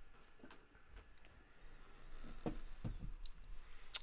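Faint, scattered taps and clicks from inking at a drawing desk: the sheet of drawing paper being turned and a dip pen being handled.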